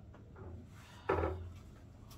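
Quiet room tone, broken about a second in by one short vocal sound from a man, a brief word or hum.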